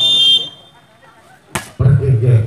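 A referee's whistle gives one short, shrill blast at the start. About a second and a half later there is a single sharp smack, and voices follow.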